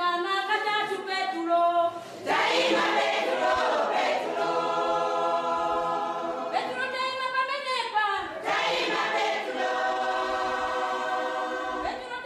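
A cappella choir singing in long held notes, phrase after phrase, with no instruments.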